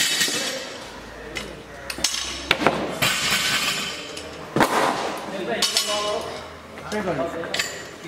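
Barbell and weight plates clinking and clanking as they are handled, a series of sharp metallic knocks with the loudest about halfway through.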